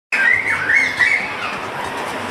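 A bird calling with a few high, sliding notes in the first second or so, over steady street traffic noise.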